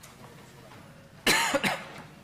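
A person coughing twice in quick succession, a little over a second in, loud as if close to a microphone.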